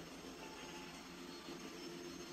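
Faint, steady droning hum of room ambience, with a few faint held tones running through it.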